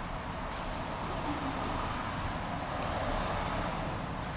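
Steady background noise, a constant hum and hiss, with a few faint brief rustles.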